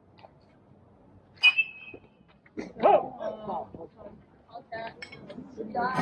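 A single sharp metallic clink with a short ring about one and a half seconds in, as a pitch is played; a loud cry follows about a second later, then voices.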